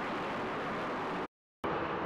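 Steady, dense machinery noise from an icebreaking tug's diesel-electric propulsion plant: diesel generators feeding the electric propulsion motor, running at an even level. It cuts off abruptly a little over a second in.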